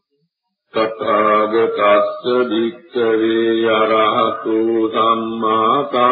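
A Buddhist monk's male voice chanting Pali in a slow recitation with long, held vowels. It starts after a short pause, just under a second in.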